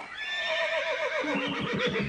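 A horse whinnying: one long, quavering whinny that starts high and wavers downward in pitch.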